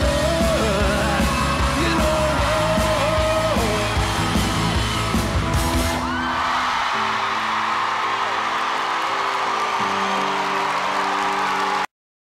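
Male singer belting a rock song into a microphone over loud backing music with a beat. About six seconds in the beat drops out to a held chord under a wash of audience cheering, and everything cuts off abruptly just before the end.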